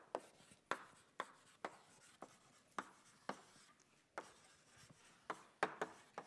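Chalk writing on a blackboard: a run of sharp taps and short scratches as letters are formed, about two strokes a second at an uneven pace.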